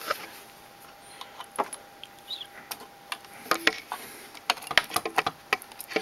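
Scattered clicks and light knocks from a VGA monitor cable's plug being handled and pushed into a video card's port on a bare motherboard. A faint steady whine runs underneath.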